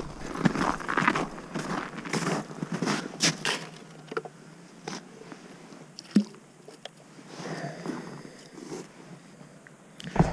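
Boots crunching on packed snow in irregular steps, with small clicks and knocks of fishing gear being handled and one sharper knock about six seconds in.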